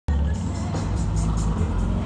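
Music with heavy bass and a quick treble beat of about four ticks a second, played loud through a Harley-Davidson Road King's aftermarket sound system.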